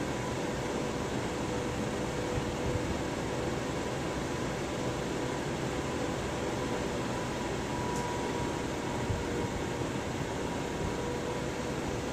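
Electric fan running steadily: an even rush of air with a faint constant hum.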